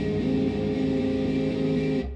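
A live rock band's electric guitars and bass guitar playing held, ringing chords.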